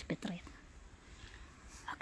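A man's voice finishing a spoken phrase in the first moment, then quiet outdoor background with a faint steady hiss, and a short soft breathy hiss near the end.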